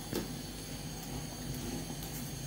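Quiet, steady low background hum with a faint single tap just after the start.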